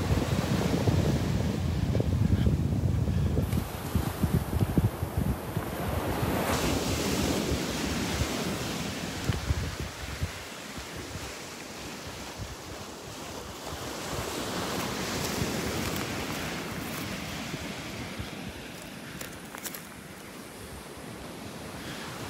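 Small surf breaking and washing up a beach, with wind buffeting the microphone as a low rumble that is strongest in the first half and eases off after about ten seconds.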